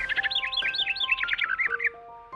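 Channel intro jingle: a quick run of bird chirps over sustained musical notes. The chirping stops just before the end.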